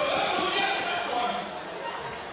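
Several people's voices calling out and talking over one another, with no clear words.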